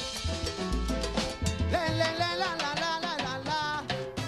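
Salsa band playing: a rhythmic bass and percussion groove, with a wavering, bending melody line that comes in about halfway through.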